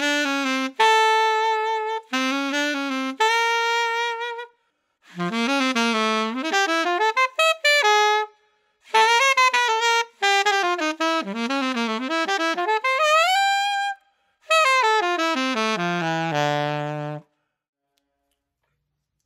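Solo saxophone played with an Ambipoly synthetic reed: four short melodic phrases of held notes and quick runs with brief breaths between them, the last phrase falling to low notes before stopping shortly before the end.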